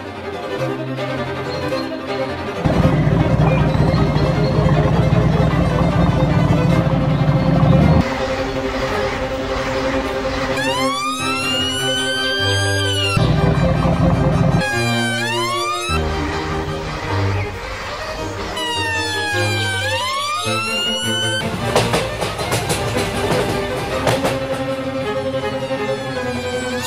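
Background music with a siren wailing in repeated rising and falling sweeps from about ten seconds in, over stretches of low rumble.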